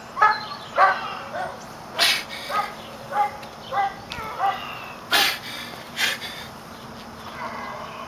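A man's strained breathing and short grunts while doing barbell walking lunges, with two loud, hissing exhalations, about two seconds in and about five seconds in.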